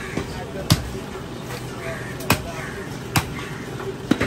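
Butcher's cleaver chopping beef on a wooden stump block: three sharp, unevenly spaced chops, with a few lighter knocks between them.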